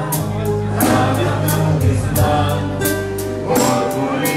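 Live band playing with singing: voices over keyboard, bass notes and a drum kit, with a steady beat of cymbal strokes.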